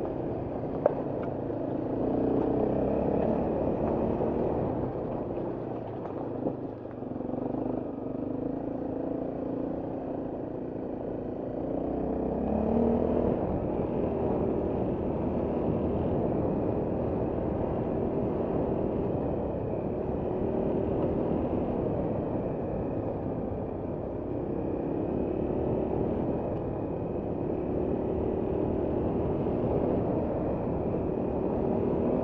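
Trail motorcycle engine running as it is ridden along a dirt and grass lane, its pitch rising and falling with the throttle. A single sharp click about a second in.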